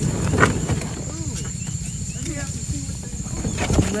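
Yamaha 25 hp outboard motor on an inflatable dinghy idling with a steady, rapid low beat, with faint voices over it.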